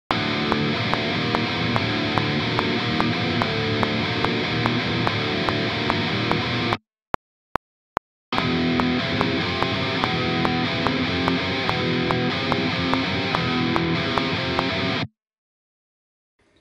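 Distorted ESP LTD electric guitar playing a riff in open position for about seven seconds, then the same riff moved up to the second fret for about seven more, both over a steady metronome click. The guitar stops for a moment between the two, leaving three clicks on their own, and it cuts off suddenly about a second before the end.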